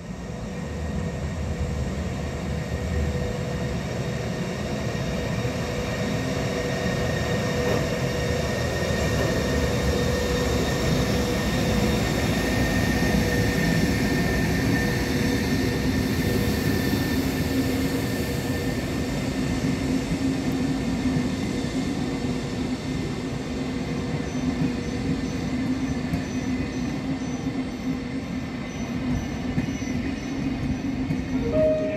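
ÖBB class 1144 electric locomotive and its CityShuttle coaches rolling past on a shunting move: a steady rumble of wheels on rail with a steady hum over it. The sound is loudest about halfway through and eases off near the end.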